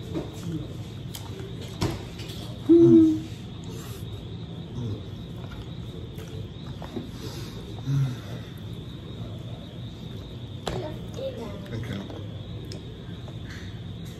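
A person's short closed-mouth hum, an 'mm' of enjoyment while eating, about three seconds in; it is the loudest sound. A lower, shorter hum comes near eight seconds, and a few sharp clicks fall near two and eleven seconds.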